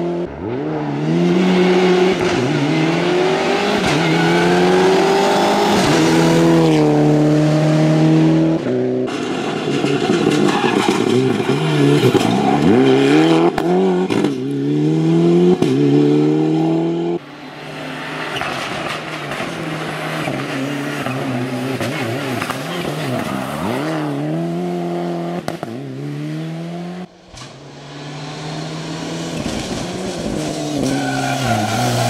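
Ford Fiesta rally car's turbocharged four-cylinder engine pulling hard at high revs. It climbs in pitch and drops back at each gear change, with lifts and blips for corners. There are several short passes, each breaking off suddenly.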